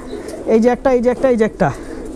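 Domestic pigeons cooing in wire loft cages, heard along with voice.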